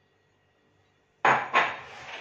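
Dishes knocking and scraping on the kitchen counter: two sharp knocks a little over a second in, then more clatter.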